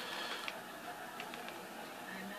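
A few faint, soft clicks from handling a small plastic quadcopter, over low, quiet background noise.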